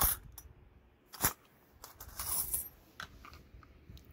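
40% silver Kennedy half dollars clinking against one another as they are tipped out of their container onto cloth: one sharp clink about a second in, then a few lighter clinks.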